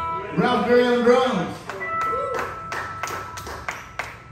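A live band's song ends, a voice calls out for about a second, then a small bar crowd gives a few seconds of scattered handclaps, with a single note ringing on under them.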